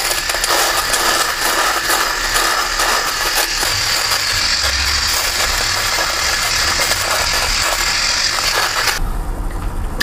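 Kemei KM-890 three-head rotary electric shaver running against the face and neck: a steady buzz with a crackle of stubble being cut. It switches off about nine seconds in.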